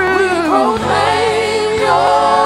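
Live gospel worship song: a woman's lead voice with backing singers over sustained keyboard accompaniment. Her voice slides downward through the first second.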